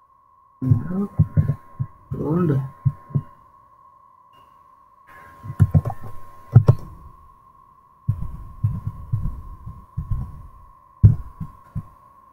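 Muffled, indistinct speech in three short stretches, with a few sharp clicks, over a faint steady high-pitched tone.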